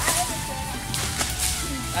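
Brush being cleared by hand: a few sharp swishes and strikes among rustling vegetation, over background music.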